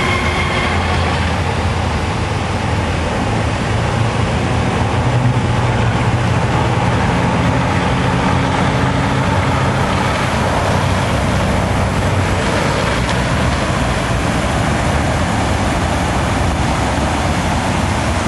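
Quarter-scale shovelnose radio-controlled model hydroplane running at speed across a pond: a steady, noisy drone with a low hum underneath.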